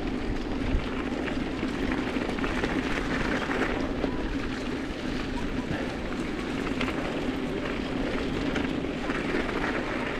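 Mountain bike rolling along a gravel and dirt track: steady tyre noise and rattle from the handlebar-mounted camera, with a steady low hum throughout.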